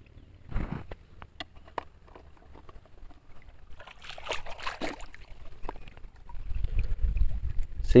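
Shallow river water sloshing and trickling as hands search through it, with a few small clicks and knocks in the first couple of seconds, and a low rumble rising near the end.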